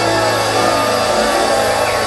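Live pop band and orchestra playing a sustained passage with women's voices over it, recorded from among the audience, with crowd noise mixed in.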